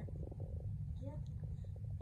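Steady low rumble, with a brief faint voice about a second in.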